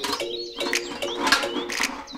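Small tin buckets being handled, their wire handles clicking and rattling, over background music with a steady beat.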